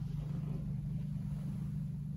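Steady low hum.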